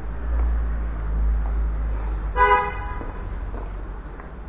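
A vehicle horn gives one short toot a little past the middle, over a low rumble.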